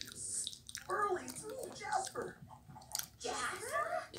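Cartoon characters' voices playing through a television speaker and picked up in the room: short vocal bits with no clear words, a little after the first second and again near the end.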